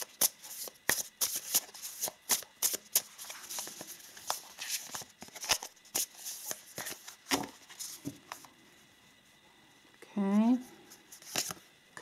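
A deck of oracle cards being shuffled hand to hand, the cards slapping and flicking in quick, irregular clicks for about eight seconds before the shuffling stops. A short voice sound follows about ten seconds in.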